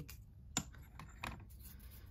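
A few faint, sharp clicks of crystal stones knocking against one another as a small quartz carving is handled and set back among a pile of tumbled stones.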